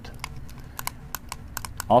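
About a dozen light, irregular metallic clicks from handling a cocked Colt 1903 .32 ACP pocket pistol with its thumb safety engaged, as the trigger and the safety lever are worked.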